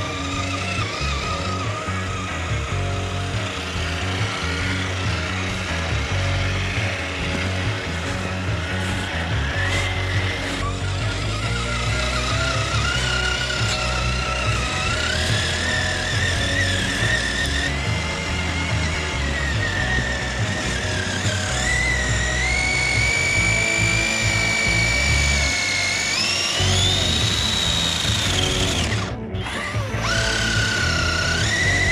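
Electric motor and gear whine of an RC crawler truck (Traxxas TRX-4) driving through snow, rising and falling in pitch with the throttle and climbing higher near the end. A music track plays underneath.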